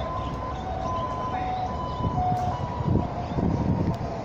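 A distant two-note signal whose high and low tones take turns in short notes, over a steady low rumble of traffic and wind.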